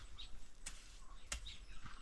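Faint outdoor ambience with a few small bird chirps and two sharp clicks about two-thirds of a second apart.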